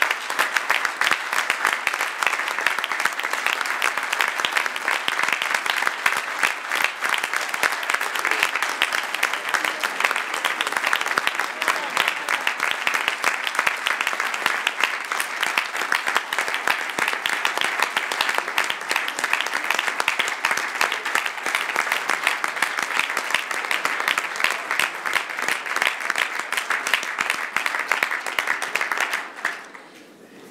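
Large audience applauding, a dense, even clapping that stops just before the end.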